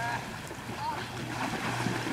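A horse splashing in shallow lake water some distance off, heard under wind on the microphone, with a brief faint call or two.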